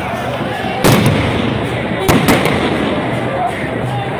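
Din of a protest crowd with voices, broken by three sharp bangs: one about a second in, then two in quick succession about two seconds in.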